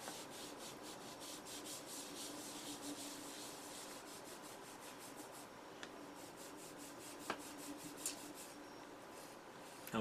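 Faint, rapid back-and-forth rubbing of a small abrasive cleaning pad on the foot of an unfired ceramic greenware cup, smoothing off rough edges. The strokes come at a few per second, die away about halfway through, and give way to a few faint clicks.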